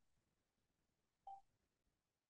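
Near silence, broken by one short, faint electronic beep about a second and a quarter in.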